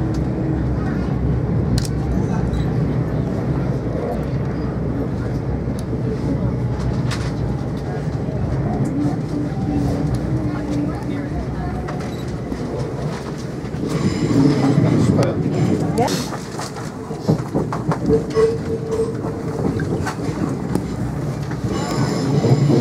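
Electric passenger train running and slowing toward a station stop, heard from inside the carriage: a steady rumble of wheels and running gear, with a louder, more uneven stretch about two-thirds of the way through.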